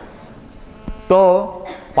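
A pause in a man's talk filled by a steady electrical hum from the microphone system, broken by a single short click. About a second in, his voice speaks briefly.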